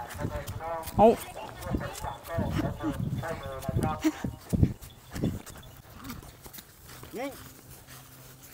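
Footsteps and footfalls crunching and thudding on dry straw stubble as a person and elephants move across the ground, with a few low thuds in the middle. Short voice calls break in near the start, a few seconds in and near the end.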